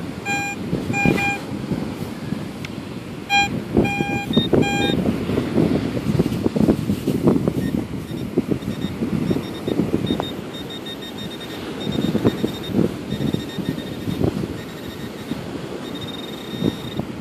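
Metal detector giving short, repeated mid-pitched beeps over a buried metal target for the first five seconds, over the scrape and crunch of dry sand being dug with a scoop. From about four and a half seconds on, a handheld pinpointer's high-pitched beep pulses on and off as it is pushed and swept through the sand hunting for the target.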